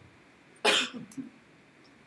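A person's single short cough, a little over half a second in.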